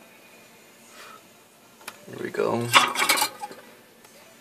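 A soldering iron dropped back into its coiled metal stand. A single click comes just before halfway, then about a second of metallic clattering and ringing.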